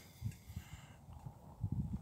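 Wind buffeting the microphone and the hexamine stove's open flame: a faint, irregular low rumble in gusts that grow stronger in the second half.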